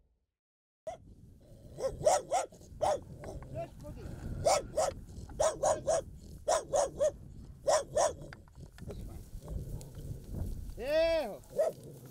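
A dog barking repeatedly: short sharp barks in quick bunches of two or three, about seventeen in all over some seven seconds, then stopping.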